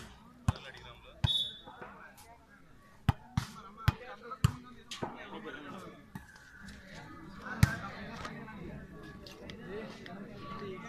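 Volleyball being struck during a rally: a series of sharp, irregular smacks, the loudest about three-quarters of the way through, with voices of players and onlookers murmuring underneath.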